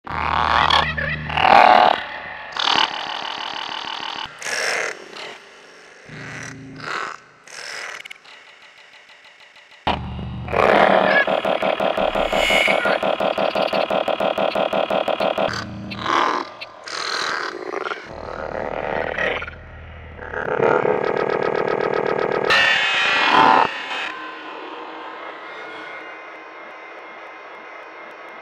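Electroacoustic music made from frog calls reworked with Kyma sound processing: short bursts of rapidly pulsing, buzzing croaks with gaps between them, a long dense buzzing stretch in the middle, then more bursts settling into a quieter steady drone near the end.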